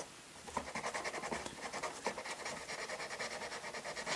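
Cotton swab wet with lighter fluid rubbed briskly back and forth over the hard plastic of a toy playset base, a faint scratching in quick, even strokes, several a second, starting about half a second in.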